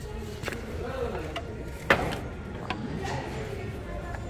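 Clicks and knocks of ornaments being handled on a metal store shelf, with one sharp knock about two seconds in, over faint background voices of a shop.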